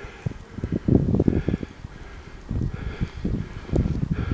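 Footsteps trudging through deep, fresh snow, with wind buffeting the microphone in irregular low rumbles, loudest about a second in and again near the end.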